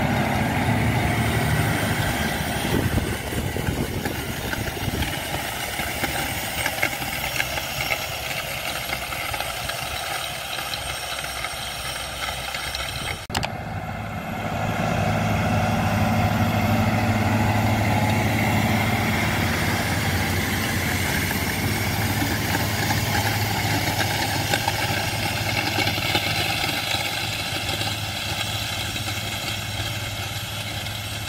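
Massey Ferguson tractor's diesel engine running steadily under load as it pulls a seed drill through the soil. There is an abrupt break about a third of the way in, and after it the engine hum is louder.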